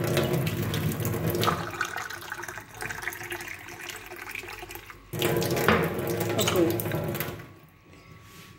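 Kitchen tap running into a stainless steel sink and into a drinking glass held under the stream. The stream is quieter for a couple of seconds in the middle, loud again, then shut off shortly before the end.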